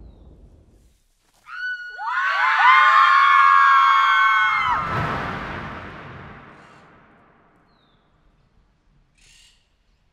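A chorus of voices screaming together: one cry starts about a second and a half in, and many overlapping cries swell in over it for about three seconds. The screams break off into a deep boom that dies away over a few seconds.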